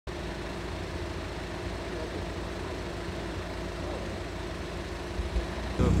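Steady street traffic noise with a low engine hum from idling vehicles. Near the end it cuts to a louder, close car engine idling as a man starts to speak.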